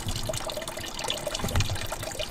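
A thin stream of water trickling steadily out of a car radiator's drain into a drain pan, as the radiator is flushed with hose water to wash out the old coolant.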